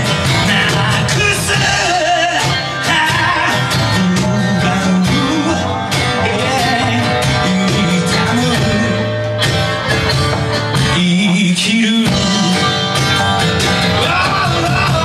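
Live band music: acoustic guitar, upright bass and drums playing together at a steady, full level.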